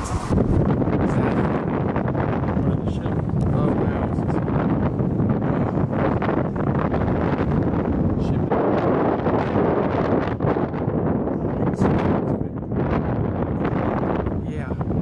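Steady wind rushing over the microphone, strongest in the low end.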